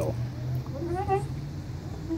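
Metal swing chains and hangers squeaking as a playground bucket swing goes back and forth, with a short squeak about a second in, over a steady low hum.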